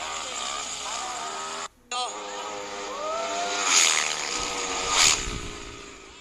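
Racing scooter engines revving up in pitch, with people shouting over them and two loud bursts about four and five seconds in; the sound drops out briefly and fades near the end.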